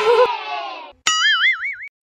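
A cartoon 'boing' comedy sound effect, its pitch wobbling up and down for almost a second. It comes just after a held musical tone fades out.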